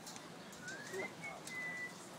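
A bird's thin whistled call: a short note rising in pitch around the middle, then a steady high whistle held for about half a second near the end.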